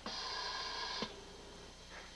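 A steady, high-pitched electronic tone sounds for about a second, then cuts off suddenly, leaving a faint lower hum.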